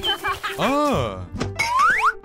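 Bouncy children's cartoon music with springy pitch-glide sound effects: an up-and-down boing in the middle and a quick rising glide near the end.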